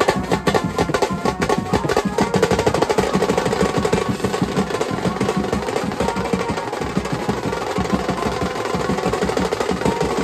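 Mumbai banjo-party band playing a fast dhammal beat: rapid rolling strokes on snare-type drums with bass drum and cymbals, loud and unbroken, under a steady melody line.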